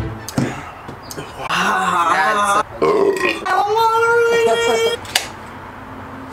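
A man belching after downing a glass of beer: a long, drawn-out burp in the middle, with a sharp click just after the start and another near the end.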